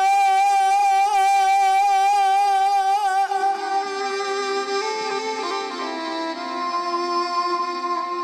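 Dakla devotional folk music with no singing: a violin holds one long, wavering note over a harmonium drone for about three seconds, then plays a moving melody with the harmonium.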